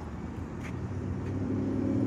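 A motor vehicle's engine with a steady low hum that holds one pitch and grows louder from about a second in.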